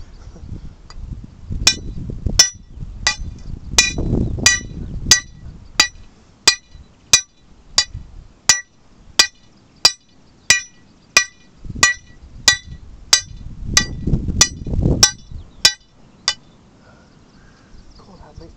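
A lump hammer striking the head of a steel hand drill rod held on rock, a steady series of sharp ringing metallic clinks at about three blows every two seconds, roughly twenty in all. This is hand drilling of a hole into rock, the rod still cutting its way down.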